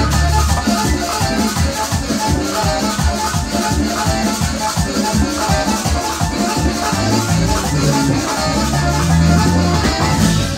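Live Latin dance band playing: congas and hand percussion keep a fast, steady beat over electric bass, with long low bass notes in the last few seconds.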